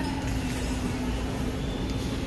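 Steady background hum of a large grocery store, with one constant low droning tone under an even rumble.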